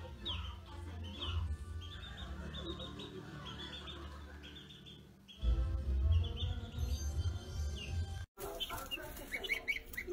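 A small group of newly hatched barnyard-mix chicks peeping over and over in short high calls, with music playing faintly underneath.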